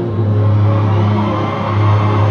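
Live concert music played through a venue sound system and heard from inside the crowd, with a heavy, steady bass note, while the audience cheers and whoops.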